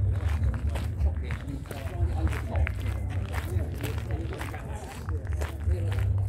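Footsteps on a gravel path, a few to the second, over distant talking and a steady low rumble.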